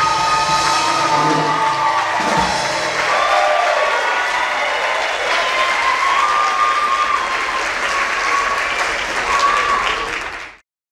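A song with a backing track ends on a held final note about two and a half seconds in; then an audience applauds, with cheering over the clapping.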